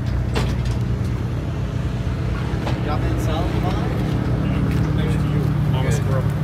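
A vehicle engine idling steadily, a low even hum, with a couple of light knocks early on and quiet talking over it.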